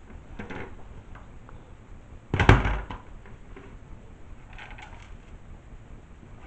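Handling noise from a disassembled LCD monitor's metal-backed panel being moved and set down on a table: a few soft scrapes and knocks, the loudest a thump about two and a half seconds in.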